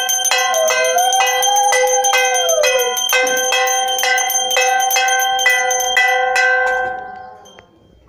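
A puja hand bell rung fast and steadily for aarti: rapid, even strikes over a sustained ringing. In the first three seconds a separate tone glides down, rises and falls again over the bell. The ringing fades away about seven seconds in.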